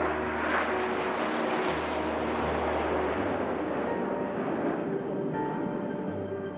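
Red Arrows BAE Hawk jets flying past in formation: a steady rushing jet noise that fades away near the end.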